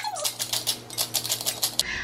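Hand-twisted pepper mill grinding whole peppercorns: a rapid run of crunching clicks, several a second, that stops shortly before the end.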